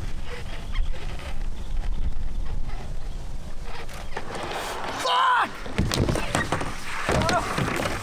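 A low rumble through the first few seconds, then a man's short wordless vocal cries about five seconds in and again around six to seven seconds.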